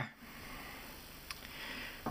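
A person's faint, breathy sniff or exhale that swells toward the end, with one small click a little past halfway.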